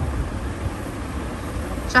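Low, steady background rumble of a busy shop, with no single distinct event, ending in a sharp click.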